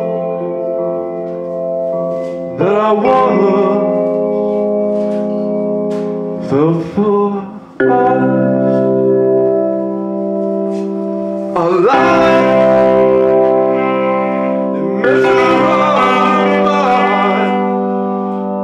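Live band music: electronic keyboards holding sustained chords that change every few seconds, with a saxophone playing rising and falling phrases over them.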